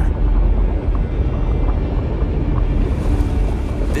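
Steady, deep rumble of documentary sound design, with a faint low musical drone.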